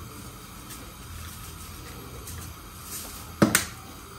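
Kitchen handling sounds over a low steady hum as seasoning is added to a pot: a few faint ticks, then one sharp clack about three and a half seconds in, as a seasoning container knocks against the granite countertop.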